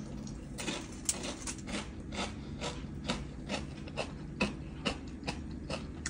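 Crunchy chewing of an air-fried tater tot close to the microphone: a steady run of short, crisp crunches, about two or three a second.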